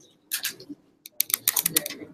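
Quick runs of sharp clicks and taps in two clusters, a short one about a third of a second in and a longer one from just past one second to near the end, with faint low voices underneath.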